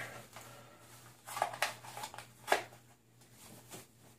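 Handling sounds of a Kydex appendix holster with a heavy-duty plastic belt clip being slipped back inside the waistband of jeans: a few short plastic clicks and knocks with cloth rustling, the sharpest about two and a half seconds in.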